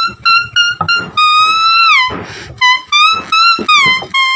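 A green leaf held between the lips and blown as a reed, playing a tune of high, reedy notes: short notes at first, then a long note that bends down, a brief breathy gap about two seconds in, and more short notes ending in a wavering vibrato.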